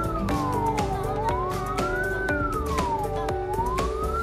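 A heterodyne beat-note whistle from the small speaker of an Octopus 7.023 MHz CW receiver kit. Its pitch slides down and back up twice as the beat-frequency control is turned back and forth. The changing tone is the frequency offset between the received test signal and the receiver.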